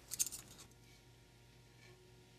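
A few quick, light metallic clicks as a thrust bearing is lifted out of the coast clutch drum of a Ford 4R100 transmission, the bearing clinking against the drum.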